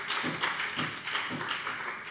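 Scattered applause from parliament members, a spread of uneven claps that dies away near the end.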